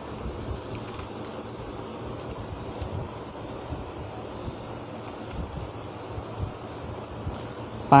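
Steady background hiss and low rumble of the recording room, with a few faint clicks.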